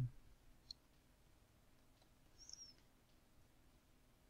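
Near silence, broken by a soft low thump at the start, a single faint computer mouse click under a second in, and a faint, brief high squeak about halfway.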